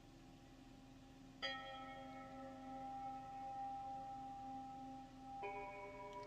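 Two bell-like tones, each sounding suddenly and then ringing on steadily. One starts about a second and a half in; a second tone with a different, higher set of partials starts near the end.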